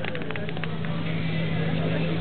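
A portable fire pump's engine running steadily at a constant pitch, a little louder from about a second in, with voices over it.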